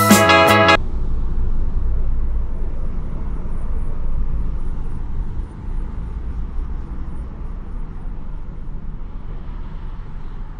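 Background music cuts off under a second in, leaving outdoor ambience picked up by the DJI Pocket 2's built-in microphone: a steady low rumble with faint hiss above it, easing slightly about halfway through.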